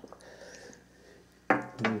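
Faint rustling and light handling of a trading card in the hands, with a small click, before a man's voice starts about one and a half seconds in.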